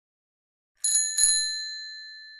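Bicycle bell rung twice in quick succession, the second ring sounding on and slowly fading.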